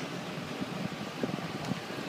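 Wind buffeting a phone's microphone over the low running of a pickup truck and parade vehicles crawling past at walking pace.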